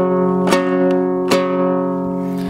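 Kazakh dombra, a two-stringed lute, strummed with slow strokes of the right-hand fingers: two strokes a little under a second apart, the chord of the strings ringing on between them.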